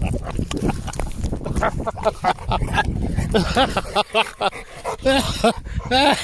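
Presa Canario grunting and growling in short, repeated bursts during rough play, with rubbing noise as the camera presses against its fur and the grass.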